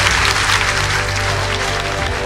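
Large audience applauding, with background music playing underneath.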